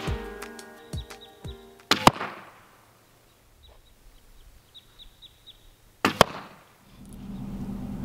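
Background music with plucked notes ends about two seconds in with a sharp thwack of an arrow striking a bag archery target. A second sharp hit comes about six seconds in, and near the end a steady low hum of a car cabin on the move sets in.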